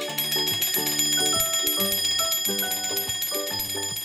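A twin-bell alarm clock ringing continuously, a high metallic ring that starts suddenly at the beginning, over background music.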